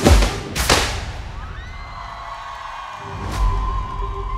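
Live band introduction: two last heavy drum hits ring out in the first second, then sustained keyboard tones swell in, with a deep bass note and one more hit joining a little after three seconds in.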